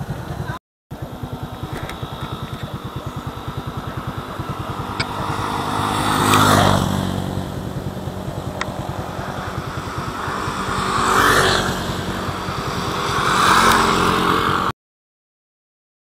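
Motorcycle engine running while riding, its pulsing note picking up as the bike gets going, with a rushing noise swelling up three times. The sound breaks off briefly just under a second in and stops near the end.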